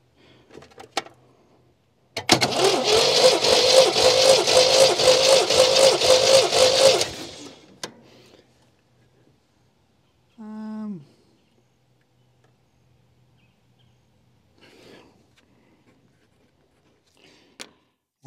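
1979 MGB's four-cylinder B-series engine being cranked over by its starter motor with the throttle held wide open for a compression test, turning over in even rhythmic pulses for about five seconds and then stopping.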